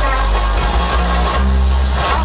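Reggae dub riddim played loud through a sound system, carried by deep, sustained bass notes.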